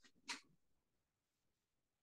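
Near silence: room tone, with one brief faint sound about a third of a second in.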